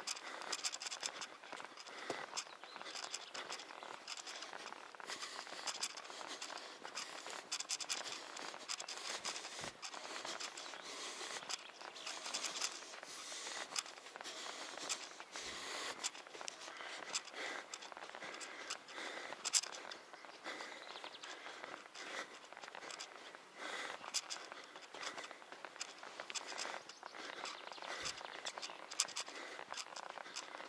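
Footsteps scuffing on a sandy dirt track at a steady walking pace, with light rustle from clothing and the handheld camera.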